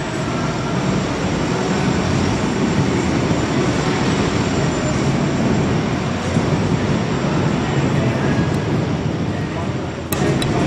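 Military truck engines running, a steady low rumble filling an enclosed concrete underpass.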